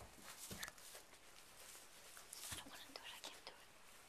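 Very quiet: a person whispering faintly, with a few soft rustles.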